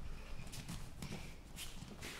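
Soft, irregular thuds and scuffs of bare feet stepping and shuffling on foam training mats as boxers move through a partner drill.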